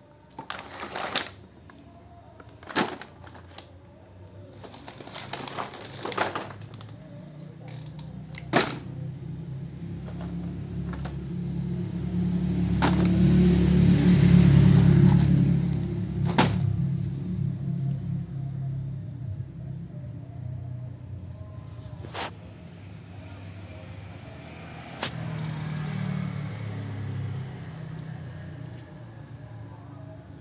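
Plastic toy packaging being handled: rustling and scattered sharp clicks and crackles as bagged and blister-carded toy sets are picked up and moved. Underneath, a low rumble swells up, is loudest about halfway through, then fades.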